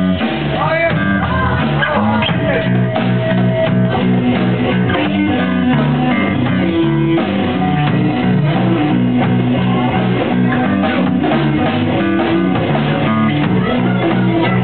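A rock band playing live: guitar over a bass guitar line and a drum kit, steady all the way through.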